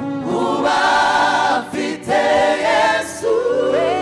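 Gospel choir singing together through microphones, several voices in harmony, with short breaks between sung phrases.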